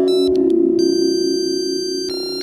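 Modular synthesizer holding a steady low electronic chord, with short high beeps at the start and a cluster of high steady tones that come in just under a second in and stop near the end. The notes come from a telephone pickup coil picking up an old laptop's electromagnetic noise, turned into a square wave and fed to a chord module.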